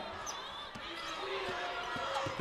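A basketball being dribbled on a hardwood court: a few separate bounces about half a second to three-quarters of a second apart, over faint arena background.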